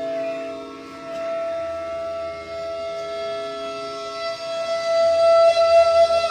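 Bansuri (bamboo transverse flute) holding a long sustained note in Raga Marwa, with no tabla, over a steady drone. The note swells louder and wavers near the end.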